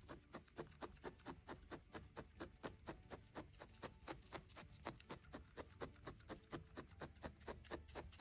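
Felting needle stabbing repeatedly through folded wool into a felting pad, a faint, even run of soft pokes at about five a second.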